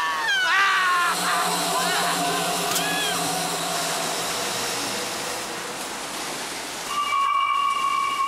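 A scream, wavering in pitch, that fades just after a second in, followed by a shorter cry about three seconds in. Both sit over a steady rushing hiss and a low drone, and a steady high tone comes in near the end.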